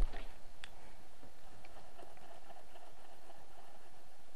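A few low knocks and clicks from handling in the first second, then a handful of faint ticks over a steady background hum.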